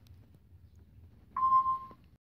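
A single electronic beep near the end: one steady tone held for about half a second, then cut off, over a faint low hum.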